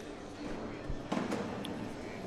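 A cornhole bag landing on the wooden board with a single dull thud about a second in.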